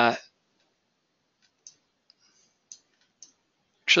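A few faint, short computer mouse clicks, spaced irregularly against near silence.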